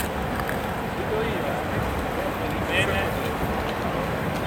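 People talking among a crowd gathered around a car, over a steady outdoor background noise.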